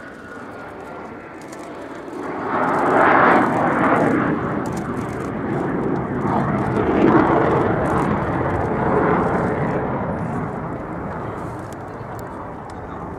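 Jet noise of an F-15J fighter's twin turbofan engines as it flies past low. The noise swells about two seconds in, stays loud with two peaks, and fades slowly near the end.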